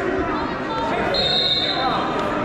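A wrestling referee's whistle, one short steady shrill blast a little under a second long, starting about a second in, over scattered voices.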